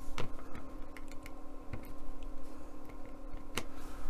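Light, irregular clicks and taps of tweezers and fingers setting tiny cleat and valve parts into a model ship's deck, with a faint steady hum behind.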